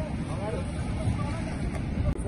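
Low, steady rumble of wind buffeting the microphone and surf on an open beach, with people's voices talking faintly over it.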